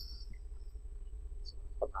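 Pause in a man's speech: steady low hum and room tone with a faint, thin, high-pitched steady tone, and a short spoken word near the end.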